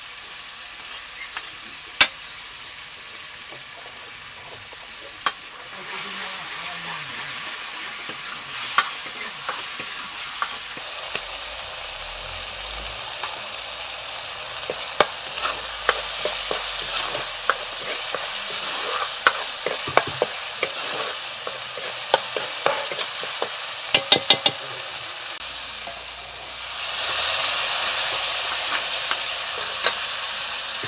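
Spices frying in hot oil in a metal karahi, with a metal ladle stirring and knocking against the pan in sharp clicks. The sizzle grows louder near the end.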